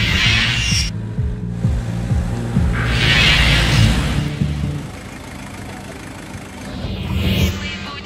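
Intro music over the low, throbbing rumble of a Hummer H1's engine, which fades away about five seconds in. Two hissing swells pass over it, one ending about a second in and another about three seconds in.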